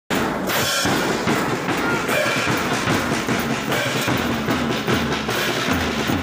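Marching band drums playing continuously: snare drums with low drum beats underneath.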